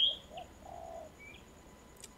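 Birds calling: a quick rising chirp right at the start and a shorter, fainter chirp about a second later, with a faint low coo in between.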